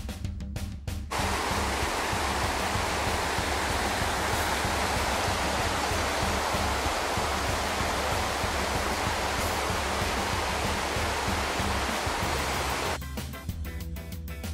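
Steady rushing of a small mountain creek cascading over boulders, with background music underneath. The water starts about a second in and gives way to music alone near the end.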